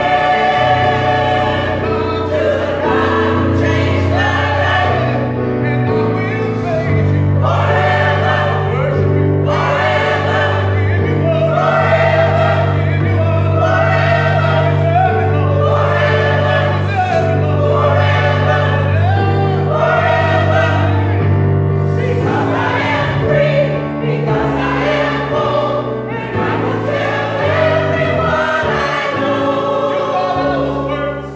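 Gospel choir singing, with a keyboard holding long low bass notes under the voices.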